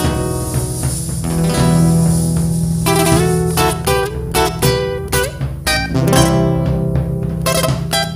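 Instrumental Bolivian folk music from Tarija played live by a band: nylon-string acoustic guitars pick a quick melody over an electric bass, with strikes on a large folk drum.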